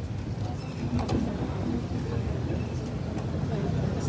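Steady low rumble of city road traffic, with faint distant voices.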